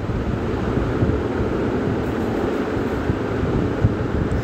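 Steady low rumbling background noise on a phone's microphone, with no clear tone or rhythm.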